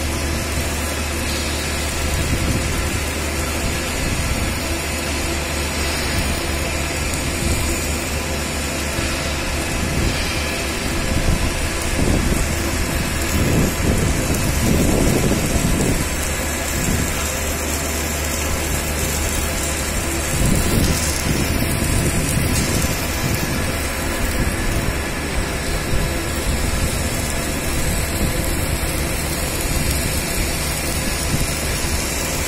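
Submerged arc welding station running on a pipe seam: a steady low electrical hum under a constant even hiss, swelling a little in the middle.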